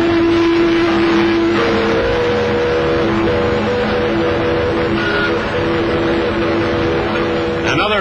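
Several ship and harbour-craft whistles sounding together in long, steady, overlapping tones over a continuous hiss, one whistle changing pitch slightly about a second and a half in.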